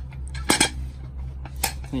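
Metal clinks and clacks from a hinged metal locking end cap being handled, its lid and latch hasp knocking together, with two sharper clicks, one about half a second in and one near the end.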